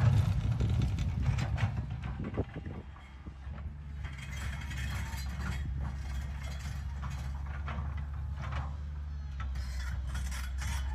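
A tipper truck tipping a load of rock, the rocks tumbling and clattering out over about two and a half seconds. Then a Komatsu PC200 excavator's diesel engine running steadily as its bucket digs through rocky soil, with scattered clanks and scrapes.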